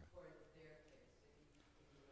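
Faint, distant speech of one person talking off-microphone, words not clear.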